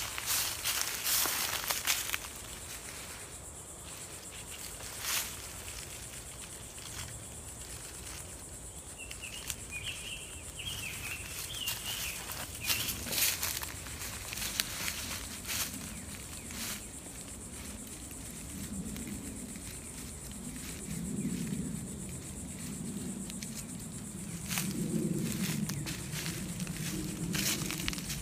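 Footsteps and rustling in dry leaf and pine-needle litter, with scattered clicks, as a nylon poncho is handled and its corners staked to the ground. A steady high insect hiss runs underneath.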